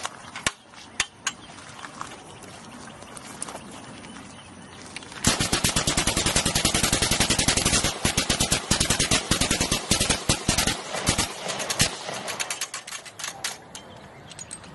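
Hand-cranked Gatling-style rig of several Kalashnikov-pattern rifles firing: a few single shots first, then about six seconds of rapid, continuous fire that breaks up into scattered shots near the end.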